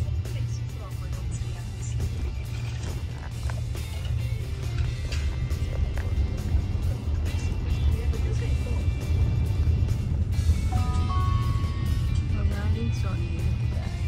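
Steady low road and tyre rumble inside the cabin of a minivan driving at town speed, with music playing over it.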